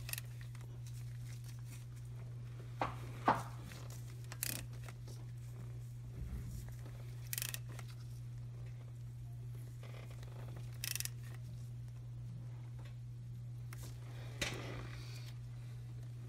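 Occasional short clicks and scrapes of metal hand tools as a camshaft phaser bolt is turned a further 180 degrees with a breaker bar, over a steady low hum.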